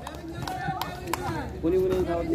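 Voices calling out across an outdoor basketball court, with two short sharp knocks partway through.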